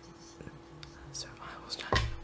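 A man's voice speaking quietly: anime dialogue playing at low volume behind a steady low hum. Near the end there is a brief, louder sound close to the microphone.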